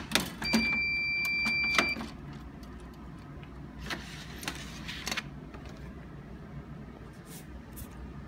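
Glue-binding machine giving a steady electronic beep for about a second and a half near the start, followed by scattered clicks and knocks as the clamp is worked and the bound book is lifted out of the machine, over the machine's low hum.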